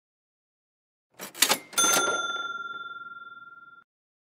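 Cash-register "ka-ching" sound effect: a short rattle and clicks a little over a second in, then a bright bell ding that rings and fades for about two seconds before cutting off suddenly. It cues the price that is about to be stated.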